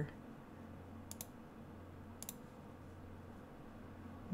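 Two faint double clicks from a computer's mouse or keys, about a second apart, over a steady low hum.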